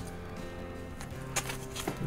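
Quiet background music of sustained held notes, with two brief crinkles of a plastic record sleeve being handled near the end.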